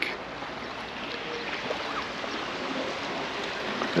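Steady hiss of seaside ambience: small waves washing along a rocky shoreline.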